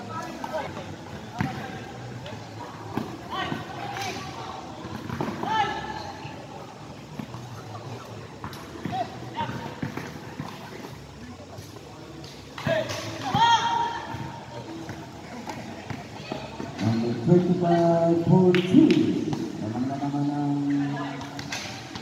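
Players and spectators calling out during a basketball game, with scattered thuds of the ball bouncing on the court. The voices get louder and more sustained in the last third.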